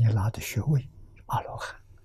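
Only speech: an elderly man lecturing in Mandarin, in short phrases with a brief pause between them.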